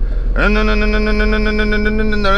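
A man's voice holding one long, steady drawn-out vowel, starting about half a second in, over a low steady rumble.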